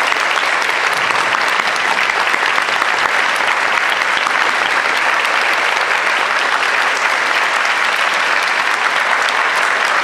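Audience applause in a concert hall, a steady unbroken clapping that neither swells nor fades.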